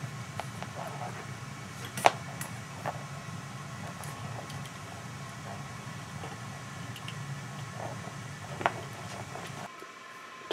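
Steel bicycle brake cable being fed through its housing and pulled tight by hand: a few light clicks and taps, the sharpest about two seconds in, over a steady low hum.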